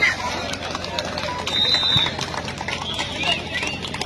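Shouting from players and spectators during a kabaddi raid and tackle, with scattered sharp knocks and a short high whistle-like tone about halfway through, over a steady low hum.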